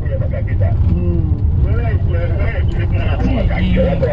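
Steady low rumble of a moving car, heard from inside the cabin, with indistinct voices talking over it.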